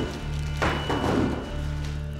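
Cigarette cartons being set down on a wooden desk, with a couple of dull thuds about half a second to a second in, over background music with low held tones.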